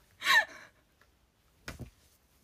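A young woman's high-pitched gasp of laughter, a short breathy squeal that falls in pitch, followed near the end by a short low thump.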